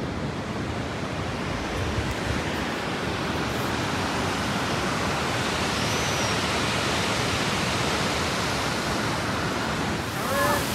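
Steady rushing noise of a mountain stream cascading down a rocky gorge, growing slightly louder over the first few seconds.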